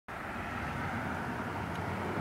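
Steady outdoor background noise: an even, low rumble with no distinct events.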